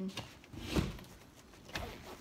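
Black nylon carry bag of a tripod easel being handled and moved on a table: rustling and bumping, with a louder knock a little under a second in and another shorter one near the end.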